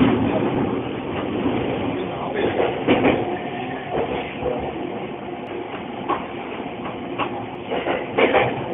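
Commuter train carriage in motion, heard from inside: a steady, dense running rumble and rattle with a few brief louder knocks, recorded with a phone's narrow sound.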